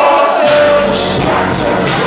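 Loud live hip hop music over a concert PA: a beat with a vocal line over it, in a large hall.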